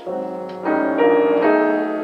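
A freshly tuned Pleyel piano played by hand: several chords struck in quick succession, about every half second, each left ringing, growing louder after the first half second.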